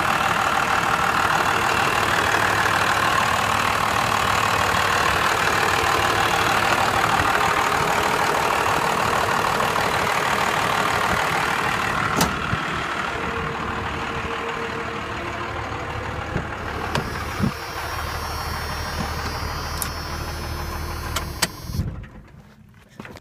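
5.9-litre Cummins 12-valve inline-six turbo diesel idling steadily, heard close with the hood open. About halfway through, a single sharp thump as the hood is shut, after which the idle sounds more muffled. Right at the end, the engine is switched off and the sound dies away.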